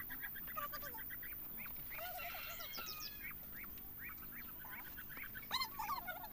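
Faint bird calls, short and repeated about once or twice a second, with a slightly louder pair near the end.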